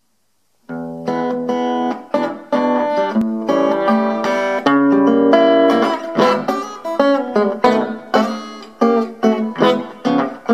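Solo acoustic guitar playing a hokum blues intro. It starts under a second in with picked notes and chords, then settles into a steady bouncing rhythm of separately struck chords in the second half.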